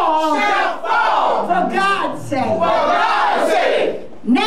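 A woman preacher shouting loudly in impassioned, wordless or unintelligible exclamations, in long, strained phrases whose pitch rises and falls.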